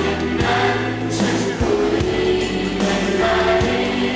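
Live Thai pop song: a band plays held chords over a drum beat while voices sing.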